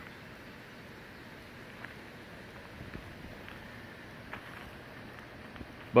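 Faint, steady outdoor background hiss with a couple of faint short sounds, one about two seconds in and one past four seconds.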